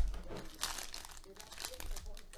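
Foil trading-card pack wrapper crinkling and rustling as hands pull it open, in a string of irregular crackly surges.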